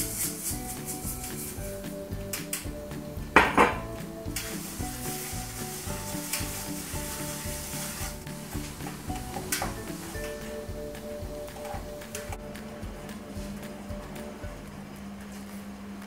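Granulated sugar poured into a non-stick frying pan, then a metal spoon stirring and scraping in the pan as the sugar melts for caramel, with a loud clatter about three and a half seconds in. Background music plays throughout.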